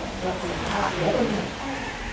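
Indistinct speech: voices talking in a room, too unclear for the words to be made out.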